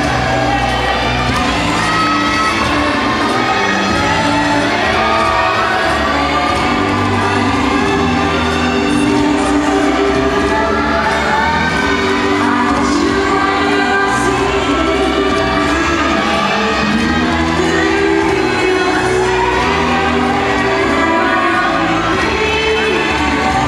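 Rumba music for a ballroom competition heat playing through the hall's sound system, mixed with a crowd of spectators cheering and shouting throughout.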